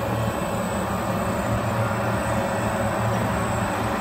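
Glass-lamination pre-press line running: the heating oven and roller conveyor give steady machine noise with a low hum.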